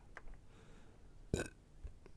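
Faint clicks of plastic figure parts being handled, with one short throaty vocal sound about a second and a half in.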